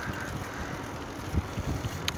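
Wind buffeting a phone's microphone while riding outdoors: a steady low rush of moving air, with faint brief knocks.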